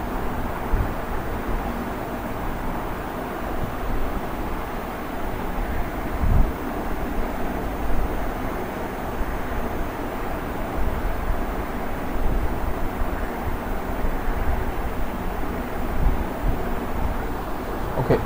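Steady rushing background noise, strongest in the low and middle range, with a few soft low thumps scattered through it.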